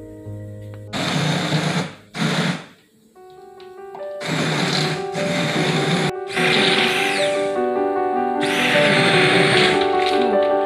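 Immersion stick blender run in about five short bursts of a second or so each, blending tomato sauce in a steel pot, its motor pitch sliding up and down within some bursts, over background music.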